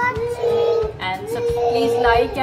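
A young girl singing two long held notes, the second starting about a second in.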